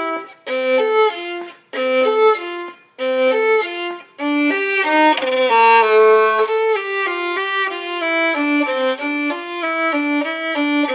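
Solo violin, bowed, playing a melody. The first few seconds come in short phrases with brief rests between them; from about four seconds in, it plays an unbroken line of quicker notes.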